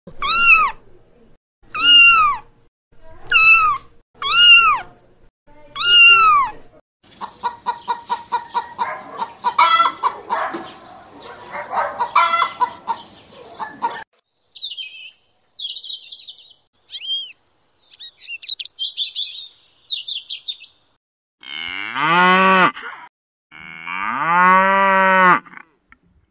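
Kittens meowing five times, each meow a high arching cry. Then hens clucking in a fast run, followed by scattered high chirps, and near the end a cow mooing twice in long, low calls.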